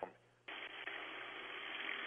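Kitchen sink tap turned on full blast, water running in a steady rush heard over a telephone line; it starts suddenly about half a second in.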